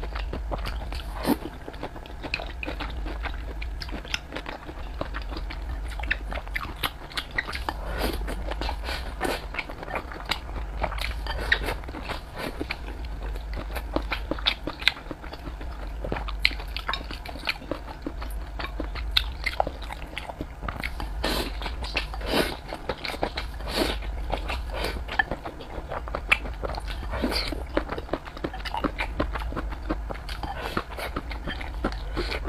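Close-miked chewing and biting of braised pork belly and rice, a run of irregular wet smacks and clicks, with chopsticks knocking against the rice bowl, over a steady low hum.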